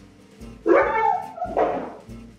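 A dog barking: a loud call about half a second in, then a shorter, rougher one, over background music with a steady beat.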